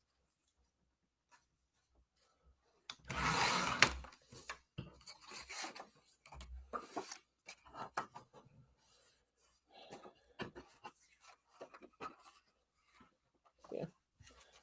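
A sliding-blade paper trimmer cutting a strip of patterned paper: one rasping stroke about a second long some three seconds in. After it, light rustling and tapping of paper and card being handled.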